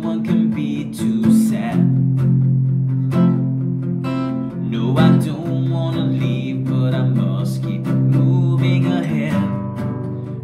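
Acoustic guitar strummed in steady chords, with a man's voice singing along without clear words.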